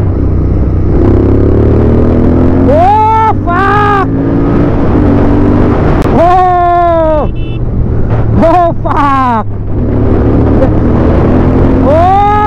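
Modified Royal Enfield Interceptor 650 parallel-twin engine under hard acceleration, its revs climbing in repeated rises through the gears, with wind rushing past. Over the engine the rider lets out several long, drawn-out yells.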